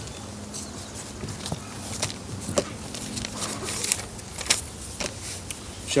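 Scattered clicks and rustles of movement and handling at a podium microphone, over a faint steady low hum through the first few seconds.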